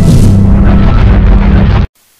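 Loud, bass-heavy intro theme music from a news channel's logo sting. It cuts off suddenly just before the end.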